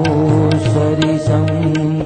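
A man singing a devotional bhajan in long held notes, over instrumental accompaniment with drum strokes about twice a second.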